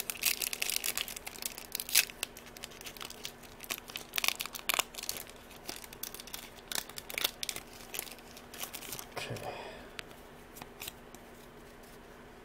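A Yu-Gi-Oh! booster pack's foil wrapper being torn open and crinkled by hand, with a rapid run of sharp crackles and rips that thins out after about eight seconds.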